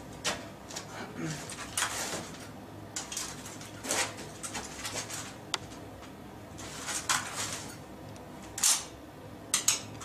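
Footwork on a concrete floor: several short shoe scuffs and shuffling steps with clothing rustle as a man pivots on the spot. The loudest scuffs come about seven and nine seconds in.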